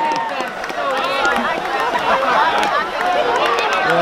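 Several people talking over one another: crowd chatter among onlookers.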